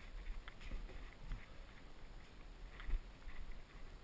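Faint, irregular scuffs, scrapes and small knocks of a hiker moving through a narrow sandstone slot, with feet and hands brushing the rock, and low thumps from the body-worn camera.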